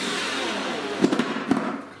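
Cordless drill driving a screw into the wooden frame of a flat-pack table, running for nearly two seconds with a couple of sharp knocks partway through, then stopping.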